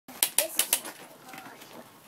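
Wrapping paper crackling four times in quick succession, then fainter rustling as it is handled.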